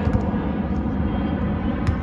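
Steady low rumble of wind on the microphone during a beach volleyball rally, with a single sharp slap of a hand on the volleyball near the end.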